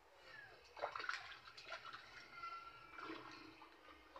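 Water splashing and sloshing in a plastic tub while a kitten is bathed, loudest about a second in, with the kitten's thin mews: a short falling one near the start and a longer held one a little past the middle.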